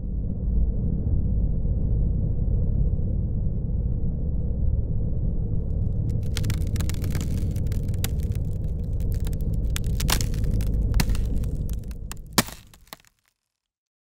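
Title-card sound effect: a deep, steady rumble, joined about halfway through by crackling that grows denser. A single loud crack comes near the end, then everything fades out and stops about a second before the end.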